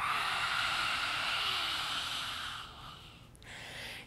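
A woman's lion's breath (simhasana): one long, forceful 'ha' exhale through the wide-open mouth with the tongue out, a breathy rush that fades away after about two and a half seconds. A fainter breath follows near the end.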